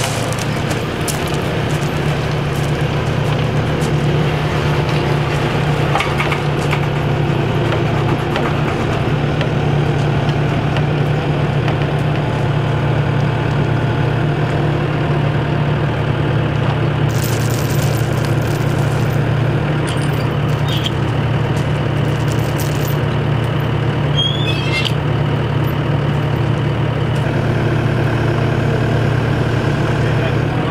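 Kubota SVL90 tracked skid steer's diesel engine running steadily under load, with a few light knocks and clicks now and then.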